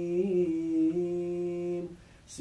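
An imam chanting Quranic recitation aloud while leading prayer. His voice draws out one long, steady sung note that stops just before the end.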